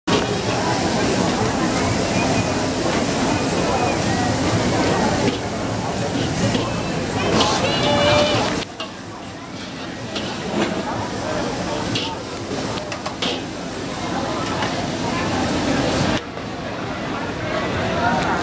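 Busy street ambience: a steady din of many indistinct voices mixed with traffic noise. It drops sharply about halfway through and builds again near the end.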